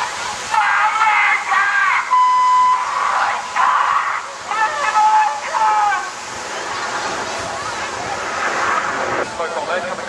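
Distant jet noise from the Red Arrows' BAE Hawk T1 formation overhead: a steady rushing haze, with voices over it for the first six seconds and again near the end, and a brief steady beep-like tone about two seconds in.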